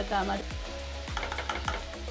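Sliced onions and dried mackerel pieces frying in oil in a nonstick pan, sizzling steadily as a utensil stirs through them.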